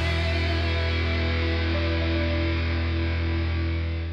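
Background rock music with distorted electric guitar holding one sustained chord, its treble fading away.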